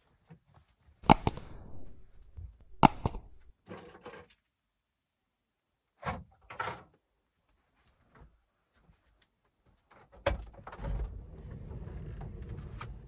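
Sharp knocks and latch-like clacks inside a camper van, two loud double clacks about one and three seconds in, then a few softer knocks. Near the end another knock is followed by a steady low rumble.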